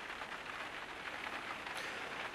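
Faint, steady hiss with a fine crackling patter.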